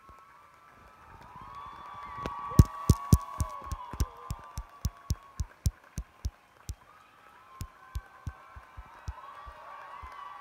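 Theatre audience applauding and cheering, with one pair of hands clapping close by at about four claps a second. The nearby clapping is loudest a few seconds in and thins out toward the end.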